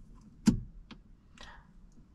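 An ignition key clicking in a Peugeot's ignition lock as it is tried and will not turn: the steering lock (Neiman) is engaged and blocks it. One sharp click about half a second in, a lighter one just before the one-second mark, and fainter ones after.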